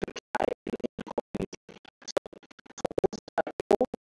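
A voice chopped into short stuttering fragments by audio dropouts, with hard gaps several times a second, too broken to make out words.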